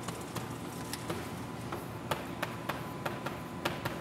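Chalk writing on a blackboard: an irregular series of about ten sharp taps as the letters are struck out by hand.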